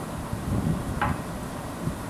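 Soft biscuit dough being pressed and kneaded by hand in a glass bowl: a few dull thuds over a steady background hiss, with one brief sharper sound about a second in.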